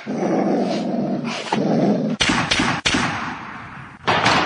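An animal growl, dog-like and rough, for about the first one and a half seconds, followed by a few short, harsh sounds in the second half.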